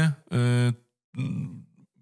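A man's hesitation filler between sentences: a short held vowel "y", then a lower, rough, creaky voiced sound that trails off.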